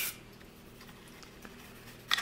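Faint rubbing and scraping of a patch-wrapped brass brush on a cleaning rod being worked into a shotgun's receiver, with one small click about a second and a half in.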